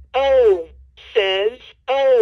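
LeapFrog Think & Go Phonics toy's recorded voice speaking letter sounds through its small speaker as letter buttons are pressed: three short syllables in quick succession.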